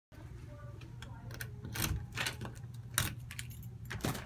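A bunch of keys jangling and a door latch clicking as a front door is unlocked and opened, a run of sharp metallic clicks and rattles.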